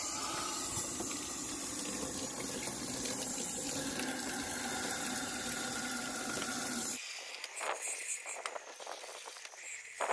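Garden-hose water back-flushing through a diesel particulate filter and splashing out of its inlet pipe into a plastic tub of water: a steady rush, rinsing the stage-one oil-dissolving chemical and oily residue back out the way they went in. It stops abruptly about seven seconds in, giving way to quieter knocks from handling.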